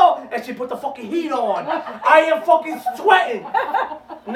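Several people talking and chuckling, with laughing voices sliding down in pitch around the middle.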